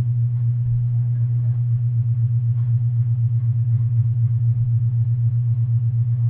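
A steady low hum with a fast, regular pulse runs throughout and is the loudest sound. Beneath it are faint scrapes and knocks of a steel digging bar and a shovel working dry soil.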